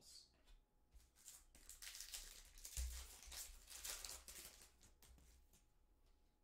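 Faint rustling and scraping of stiff chromium-stock trading cards sliding against each other as a stack is flipped through by hand, in a run of short strokes, with a low thump near the middle.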